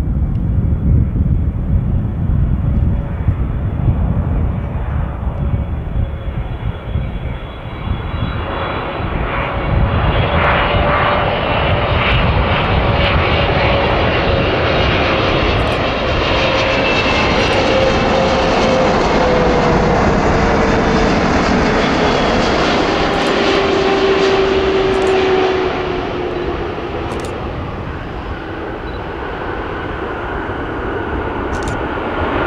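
Boeing 777-300ER's GE90 jet engines running at approach power as the airliner comes in to land. The roar builds, then a whining tone drops in pitch as it passes, and the sound eases near the end.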